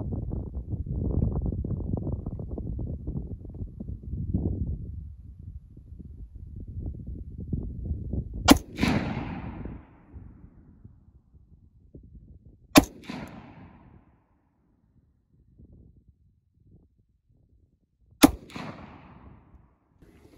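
Three single rifle shots from a Ruger Mini-14, fired slowly, about four and five and a half seconds apart, each followed by a short echo that trails off.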